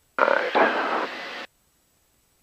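A short burst of voice over the aircraft radio in the headset, a little over a second long, switching on and off abruptly.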